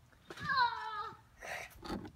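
A high, meow-like drawn-out cry, about a second long, held and then falling in pitch at the end.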